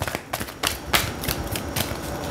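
A deck of tarot cards being shuffled by hand: a quick, irregular run of card-edge clicks and slaps.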